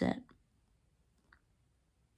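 The end of a man's spoken word, then near silence in a small room, broken by one faint short click a little past halfway.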